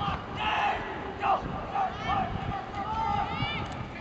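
Players and spectators shouting as a football play is snapped and run, in several short yells over crowd noise, with a longer, rising-and-falling yell near the end.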